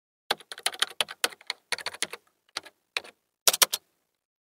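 Computer keyboard typing: an uneven run of quick keystrokes in short clusters with brief pauses, finishing with a fast burst of several keys near the end.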